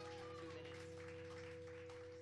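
A live rock band's final chord ringing out on guitar and keyboard, held steady and slowly fading, with scattered audience clapping over it.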